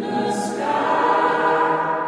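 Background music with a choir singing held notes.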